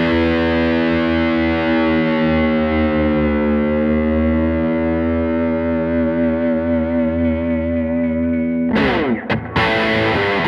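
Guild Surfliner electric guitar played through a 1964 Fender Vibroverb amp: one strummed chord left ringing for most of nine seconds, its pitch sagging and then wavering. Near the end come quick, choppy strums.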